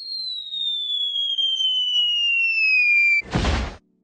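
An added descending-whistle sound effect: one clean tone glides steadily down in pitch for about three seconds, with a fainter tone rising beneath it. It ends abruptly in a short, loud burst of noise, like a crash.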